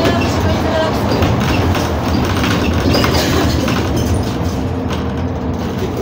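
Steady low rumble of a city bus on the move, heard from inside the passenger cabin, with indistinct voices mixed in.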